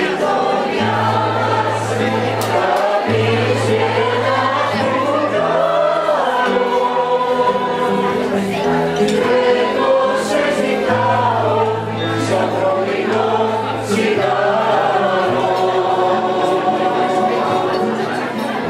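A mixed choir of men's and women's voices singing a song together, with long held low notes underneath.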